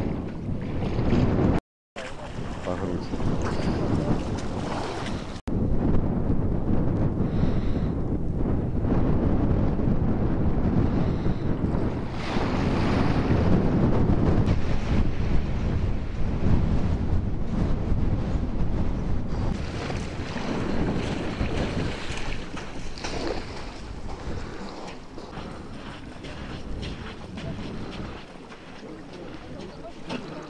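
Wind rumbling on the microphone over the sea's edge, with shallow water lapping and sloshing where people are wading with dip nets; the sound cuts out for a moment about two seconds in and grows quieter near the end.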